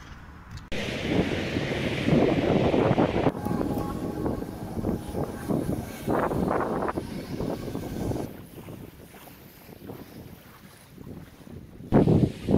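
Wind buffeting a phone's microphone: a rumbling noise that swells and drops in gusts. It cuts in abruptly about a second in, changes sharply again after about three seconds, and falls quieter about eight seconds in.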